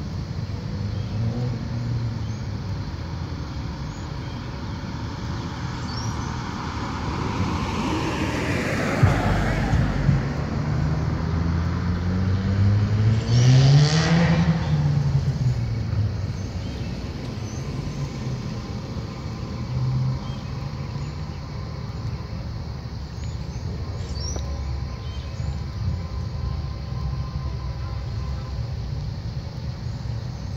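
Road traffic going by: a car passes about eight seconds in with a swell and fade of tyre noise, then a vehicle's engine climbs in pitch and falls away around fourteen seconds, over a steady low rumble.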